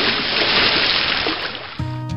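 Water-splash sound effect: a rush of splashing water that fades away. Acoustic guitar music starts near the end.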